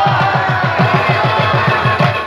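Pashto folk music played live: a hand drum beats fast, even strokes, about six or seven a second, under rabab and harmonium.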